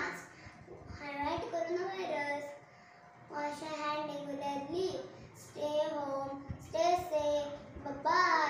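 A young girl's voice speaking in short phrases, with a brief pause about three seconds in.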